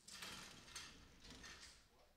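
Faint metallic rattling and knocking of the sale ring's steel gate and pen panels as a steer runs out through the gate, several knocks in quick succession.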